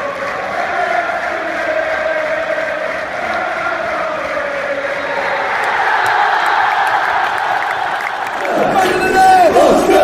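A football crowd singing a chant together, many voices blended into one sustained sound. Near the end the chant gives way to a short music sting with gliding notes.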